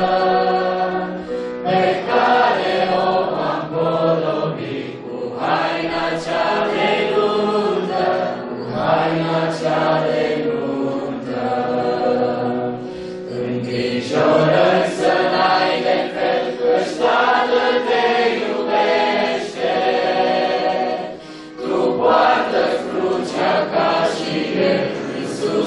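A church worship group of men and women singing a hymn together into microphones, accompanied on keyboard.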